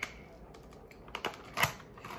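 A few light plastic clicks and taps from a diecast car's blister package being handled, the loudest about a second and a half in.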